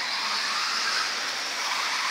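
Electric 1/10-scale RC off-road buggies racing around a dirt track: a steady high-pitched drone of motors, gears and tyres.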